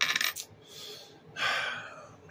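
A coin clattering onto a hard desk surface in a quick rattle of clicks, followed by two shorter noisy sounds, the second nearly as loud.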